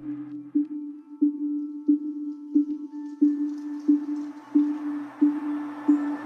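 Background music: a single low synth note pulsing about one and a half times a second, with thin high tones over it and a soft wash swelling in partway through.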